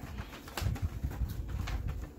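Paper gift bags and a card rustling as they are handled, over a steady low rumble.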